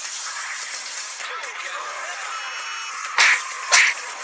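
Two short, sharp fight-hit sound effects, about half a second apart, near the end, over a steady noisy background with faint voices.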